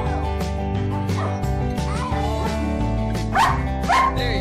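A dog's high-pitched cries over background music, with two sharp rising yelps near the end.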